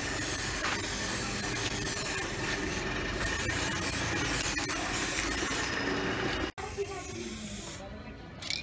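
Aerosol can of F1 Aeros matte black spray paint hissing steadily as paint is sprayed, with a brief break about three seconds in. The hiss cuts off suddenly about six and a half seconds in.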